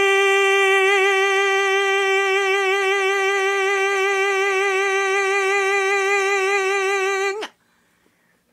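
Male singing voice holding the final note of a ballad: one long sustained note with a vibrato that widens as it is held. It cuts off about seven and a half seconds in.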